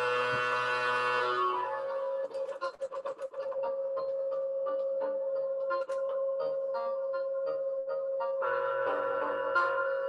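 Modular synthesizer jam: a steady held drone tone runs under a full sustained chord that thins out after about a second and a half. It gives way to a patter of short clicky blips and notes, and the fuller chord comes back near the end. The sound is lo-fi, heard through a video call's audio.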